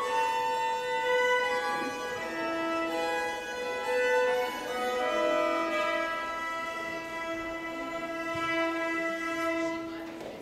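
Two Hardanger fiddles playing a waltz in duet, the bowed melody moving note by note before settling about halfway through into a long held closing chord that stops near the end.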